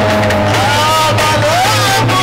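Live band music with a man singing into a microphone, his voice holding and sliding between notes over a steady bass.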